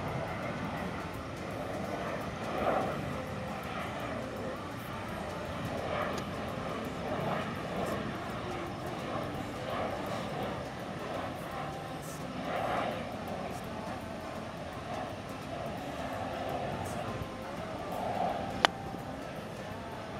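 An airplane passing overhead, a steady drone. Near the end comes a single sharp click: a golf club striking the ball off the tee.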